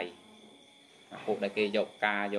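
A man's voice giving a sermon in Khmer: it pauses for about a second, then resumes. A faint steady high-pitched tone sits beneath it.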